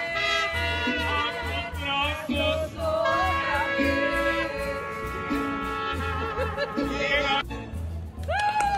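Live mariachi band playing, with trumpets and violins over a pulsing deep bass and a voice singing. The music breaks off near the end.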